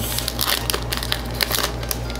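Foil wrapper of a Pokémon trading card booster pack being torn open and crinkled by hand, a quick run of crackly rips and crinkles.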